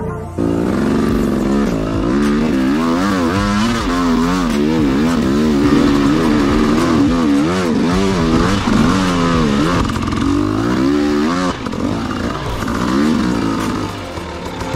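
Dirt bike engine under constant throttle changes on rough rocky trail, its pitch rising and falling over and over as it is revved and eased off, starting about half a second in.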